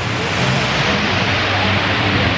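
Loud, steady rush of water from an artificial rock waterfall cascading into a swimming pool, swelling in the first half-second and then holding even.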